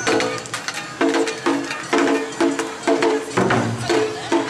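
Awa-odori festival music: a percussion-led band beating out the dance's swung two-beat rhythm, about two strokes a second, each stroke with a short pitched ring.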